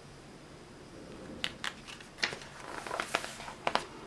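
A page of a paper catalogue being turned by hand: paper rustling and crinkling with several sharp flicks, starting about a second and a half in.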